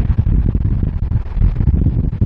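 Wind buffeting the microphone with a low, uneven rumble, heard from the open bed of a moving pickup truck.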